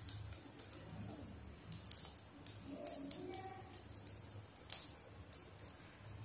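Seeds frying in hot oil in a wok, crackling: faint, scattered sharp pops, about two a second.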